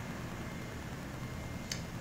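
Quiet room tone: a steady low hiss with no distinct event, and a faint click near the end.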